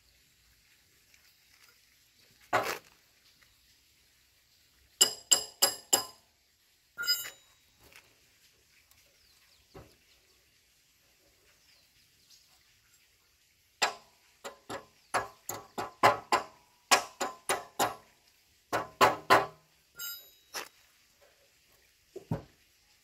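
Rear wheel of a Honda motorbike turned by hand, giving short runs of sharp clicks from the wheel and drum-brake hub: a single burst about two and a half seconds in, a quick group of four around five seconds, then a long run of clicks in the last third.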